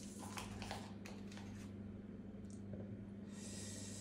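Plastic packaging crinkling and rustling as a small camera attachment is unwrapped by hand: a few short crackles in the first second and a half, then a brief hissing rustle near the end. A steady low hum runs underneath.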